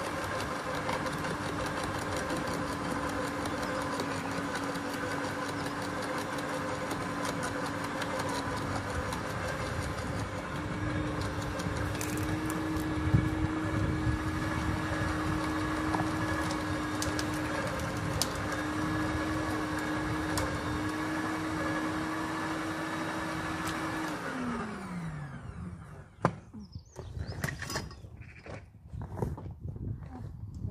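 Garden shredder running steadily while branches are fed in, with occasional crackles and clicks as they are chewed. About 24 seconds in it is switched off and the motor winds down with a falling pitch. A few sharp knocks and clatters follow.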